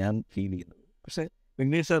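Only speech: a man talking, with short pauses about halfway through.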